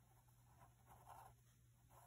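Faint scratching of a graphite pencil on drawing paper, a few short strokes, over a low steady hum.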